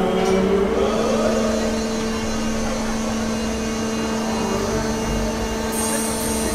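Soriani & Moser Top Star Tour fairground ride running: a steady machine hum that rises in pitch about a second in, then holds level. A high hiss joins near the end.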